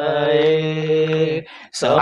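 A man's voice holding one long chanted note at a steady pitch for about a second and a half, then breaking off.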